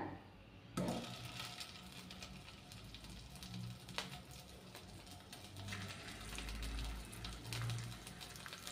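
Faint sizzling of hot oil and chilli-spice paste in a frying pan as round slices of boiled taro root are laid in, with a couple of short ticks, about a second in and again about four seconds in.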